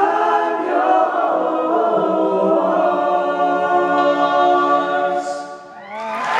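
All-male a cappella group holding the final chord of the song, several voices sustained together with a low bass note coming in about two seconds in. The chord dies away shortly before the end.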